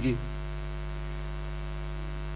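Steady low electrical mains hum with a ladder of buzzing overtones, unchanging throughout, following the tail of a man's spoken word.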